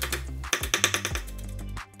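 Kitchen knife finely slicing green onion leaves on a wooden cutting board: a quick run of sharp blade knocks on the wood that stops a little past a second in, over background music.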